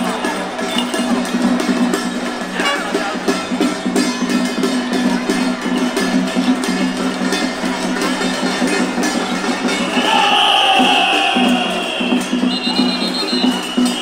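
Loud temple-procession music with percussion and crowd noise. About ten seconds in, a high tone that falls in pitch joins in, with a higher steady tone above it near the end.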